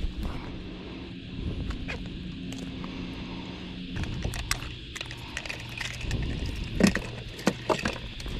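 Light clicks and snips of fishing line being cut with scissors and tackle being handled on a boat, over a steady low hum that shifts in pitch about halfway through.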